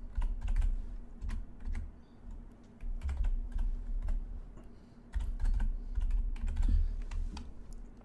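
Typing on a computer keyboard: three short runs of keystrokes with brief pauses between them.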